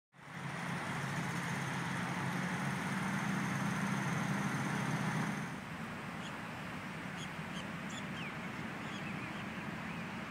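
Steady rumble of road traffic, louder for about the first five seconds and then easing, with a few short bird chirps over it in the second half.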